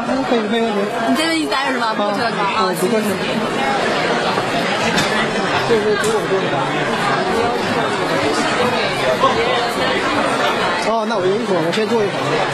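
Crowd chatter: many people talking at once, with no single voice standing out, at a steady level.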